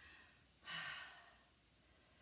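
A woman's single audible breath out, about half a second long, a little after the start, taken under the effort of a weighted exercise.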